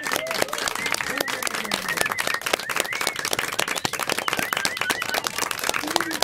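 A small group clapping hands in steady applause, with a person whistling short rising-and-falling notes over the clapping.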